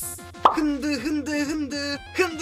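A man's voice speaking in short phrases, with one sharp pop about half a second in, over low steady background music.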